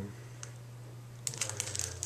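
A quick run of light, sharp clicks and taps starting a little past a second in, over a steady low hum.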